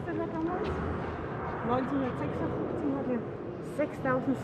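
Indistinct voices talking quietly, with no other distinct sound.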